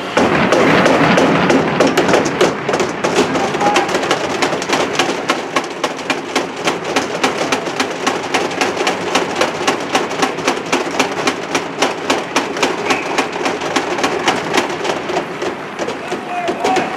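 Sharp knocks in a steady rhythm, about three a second, over a background of voices in an ice rink.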